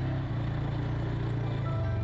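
Polaris ATV engine running as it drives along a trail, with a steady low note that shifts slightly in pitch a couple of times.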